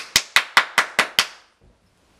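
Quick hand claps, seven sharp claps at about five a second, stopping a little over a second in.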